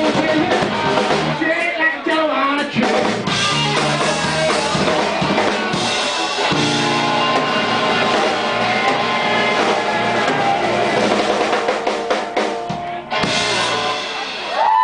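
Live blues-rock band playing electric guitars and a drum kit, working through the closing bars of a song, with a final crash just before the end.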